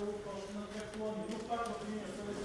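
A person speaking indistinctly, with no other clear sound.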